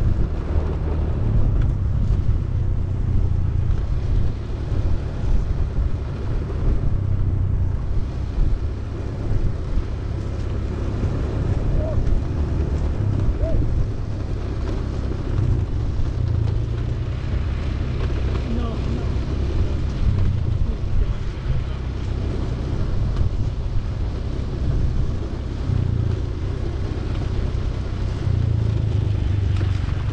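Inline skate wheels rolling over rough concrete with wind buffeting the microphone: a steady low rumble that keeps rising and falling.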